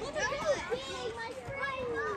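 Several children's voices talking and calling over one another outdoors, with no clear words.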